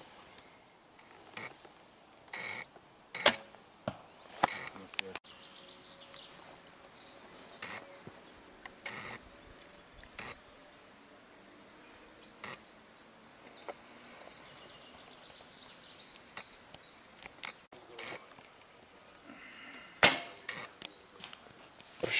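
Arrows shot from a Korean traditional bow: sharp snaps of the string on release and knocks of arrows striking, loudest about three seconds in and again near the end. Faint birds chirp in between.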